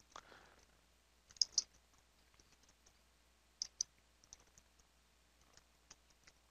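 Faint computer keyboard keystrokes: scattered soft key taps, with two louder pairs of clicks about a second and a half in and again about three and a half seconds in.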